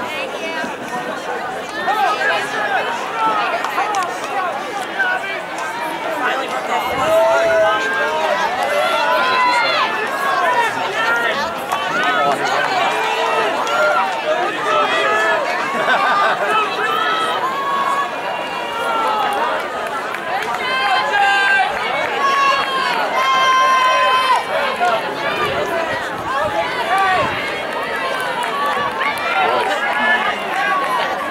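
Crowd of spectators in the stands, many voices talking over one another, with a few louder shouts about two-thirds of the way through.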